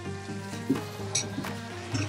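Diced potatoes, tofu and carrots sizzling in oil in a frying pan while being stirred with a spatula, with a few light scrapes, under steady background music.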